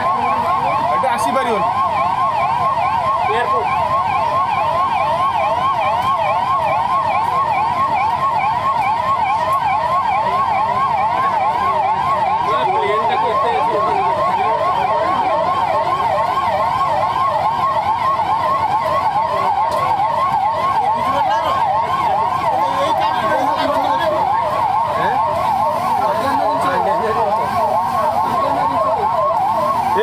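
Several police vehicle sirens wailing in a fast warble, overlapping one another without a break, over traffic noise and the murmur of onlookers' voices.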